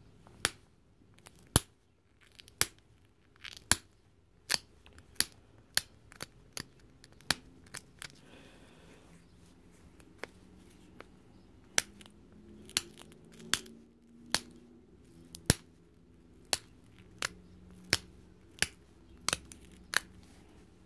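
Flint drill bit being pressure-flaked on a leather palm pad: about two dozen sharp clicks, spaced irregularly about a second apart, each a small flake snapping off the edge.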